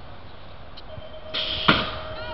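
BMX starting gate start: a steady gate tone sounds from about a second in, then a rush of noise and one sharp bang as the gate slams down.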